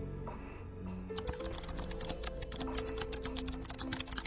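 Rapid computer-keyboard typing clicks over background music. The typing starts about a second in.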